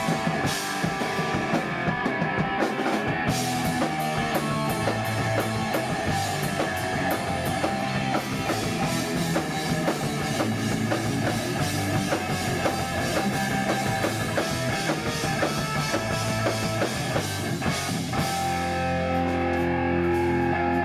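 Thrash metal band playing live: electric guitars, bass guitar and a drum kit with fast, dense drumming. Near the end the band settles into one held chord.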